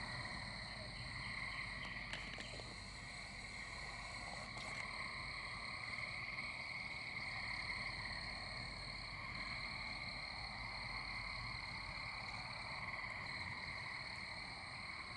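Faint, steady chorus of American toads, their long high trills merging into one continuous drone with no pauses.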